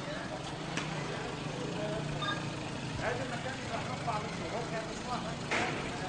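A small car's engine running at low speed, a steady low hum under general street noise, with indistinct voices of people nearby.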